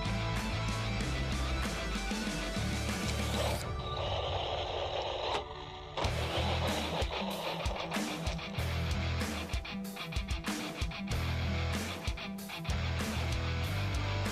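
Background music with a steady beat and a short break about four to six seconds in.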